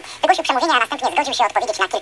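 A person talking continuously, with the voice thin and short of bass.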